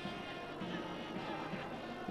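Steady stadium background from the televised football match: a continuous, even drone at a moderate level, with no commentary over it.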